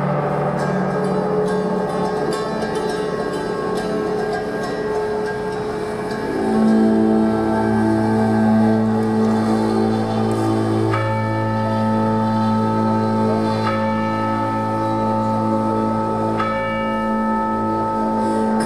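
Instrumental introduction of a dark medieval-style song played live: sustained electronic drones, with a deep drone coming in about six seconds in and three bell-like notes struck in the second half, each ringing on.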